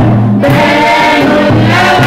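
Three women singing a Christian song together into handheld microphones, their voices holding and gliding between long notes. A short low accompaniment note recurs about every second and a half beneath the singing.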